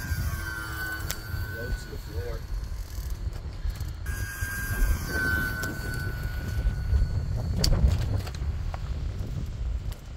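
Electric motor and propeller whine of a 1.2 m radio-controlled T-28 model plane making low passes. The whine dips slightly in pitch as it goes by, twice. Wind rumbles on the microphone throughout.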